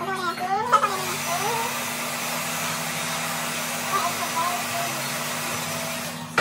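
Handheld hair dryer switched on with a click about a second in, then blowing steadily. A voice speaks briefly at the start.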